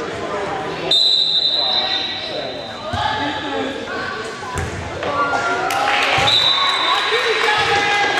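Volleyball being played on a gym floor: the ball is struck several times with thuds that echo in the hall, over voices calling and talking. A referee's whistle gives two high, steady blasts of about a second each, one about a second in and one about six seconds in, the second ending the rally.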